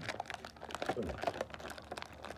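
Rapid, irregular clicks and crinkles of a thin plastic blister tray as small toy figurines are pushed out of it by thumb.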